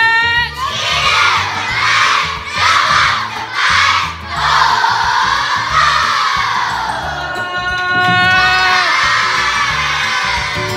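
A large crowd of schoolchildren shouting and cheering together in loud surges, roughly one a second.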